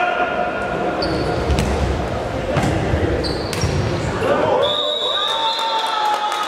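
A futsal ball being kicked and bouncing on a wooden sports-hall floor, a few sharp knocks about a second apart in a large, echoing hall.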